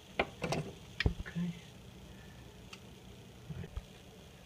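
Vise-Grip pliers clicking and tapping on a faucet cartridge's retaining nut as it is snugged up by hand: a few sharp clicks, with one heavier knock about a second in.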